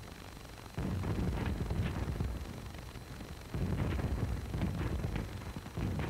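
Battle sound on the film's soundtrack: two deep, rumbling booms, one about a second in and another just past the middle, each dying away over a couple of seconds, with a few faint sharp cracks like distant rifle shots.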